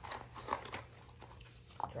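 Tarot cards being handled on a cloth-covered table: quiet rustling with a few light taps and clicks.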